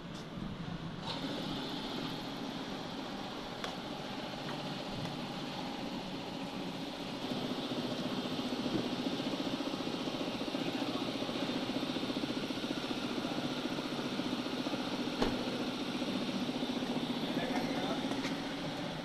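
Car-wash pressure washer pump running steadily while water and foam are sprayed onto a car, getting louder about seven seconds in.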